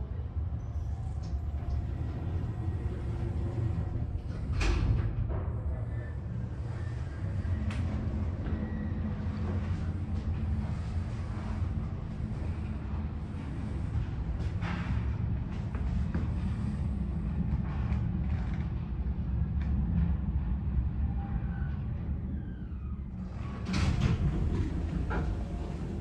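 Steady low rumble inside the cab of an EPL traction lift modernised by Kone, with a few knocks along the way. Near the end a falling whirr and a louder stretch of sliding as the lift doors open.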